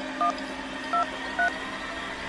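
Touch-tone keypad beeps of a mobile phone as a number is dialled: three short two-tone beeps, spaced about half a second or more apart, over a faint steady hum.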